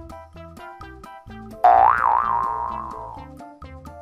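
Children's background music with a plinking melody. About a second and a half in, a loud cartoon "boing" sound effect plays: its pitch wobbles up and down, then it holds and fades over about a second and a half.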